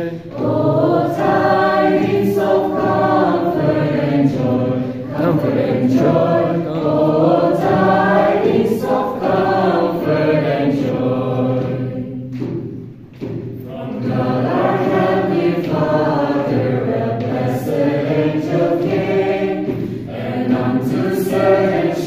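A mixed group of young voices singing a Christmas carol together as a choir, with a short break between phrases about halfway through.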